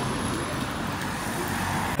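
Steady splashing hiss of water draining from a camper van's opened boiler drain valve onto asphalt, with road traffic noise underneath.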